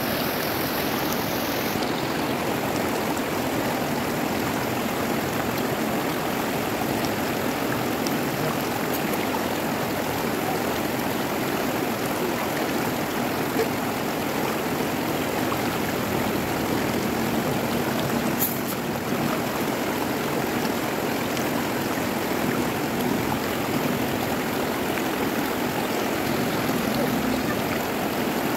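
Shallow river rapids rushing steadily over rocks.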